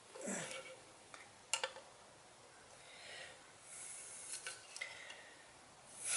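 Faint handling noises from an aluminium engine cover and loose metal parts being picked up and moved: a few light metallic clicks and knocks, the sharpest about one and a half seconds in, with soft rubbing and rustling between them.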